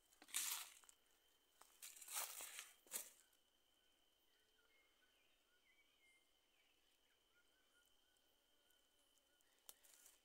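Three brief rustles of dry forest leaf litter in the first three seconds, then near silence with a faint steady high-pitched tone and a few faint chirps.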